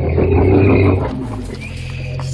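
Jeep ZJ Grand Cherokee engine running under load as the truck crawls slowly over rock, louder for about the first second and then easing off.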